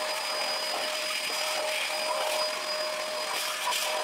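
Shop vac running steadily, a constant motor whine over rushing air, its hose nozzle worked over a 3D printer's bed and frame to vacuum up dust.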